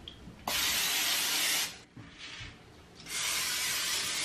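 An aerosol can of Pam cooking spray hissing onto a baking sheet in two long sprays, each lasting over a second, the second starting about three seconds in.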